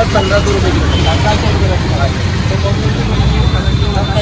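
Voices talking over a steady low rumble of street and traffic noise in a busy market.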